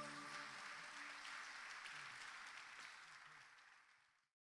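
Faint audience applause, a steady patter that fades out in the last second.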